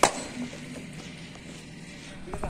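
A single sharp crack of a cricket bat striking a leather cricket ball, right at the start, with a short ringing tail, then only low background noise.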